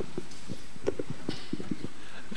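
Footsteps on a hard floor: a string of soft, low, irregular thuds over faint room noise.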